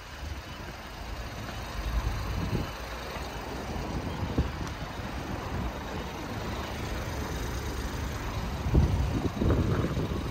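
Outdoor rumble with no clear engine note, unsteady and swelling louder near the end.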